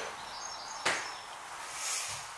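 A single sharp knock a little under a second in, over a steady faint hiss of room tone.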